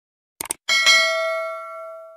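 Sound effect of a mouse click, a quick double snap about half a second in, followed at once by a bright bell ding whose ringing tones fade out over about a second and a half.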